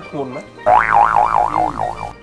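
A cartoon-style "boing" sound effect: a wobbling tone that bounces up and down about four times a second. It starts suddenly a little over half a second in and stops at the end.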